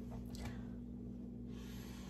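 Quiet room tone with a faint, steady low hum.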